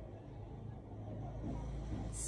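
A low, steady hum with a faint rumble beneath it. The rumble swells slightly in the second half.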